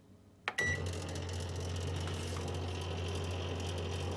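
Toshiba microwave oven being started: a click and a short beep about half a second in, then the oven running with a steady low hum.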